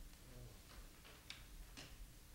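Near silence: room tone with three faint short clicks, the last just before the end.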